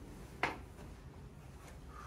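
A single sharp knock about half a second in, as a person climbs down off a padded chiropractic adjusting bench, over a low room hum.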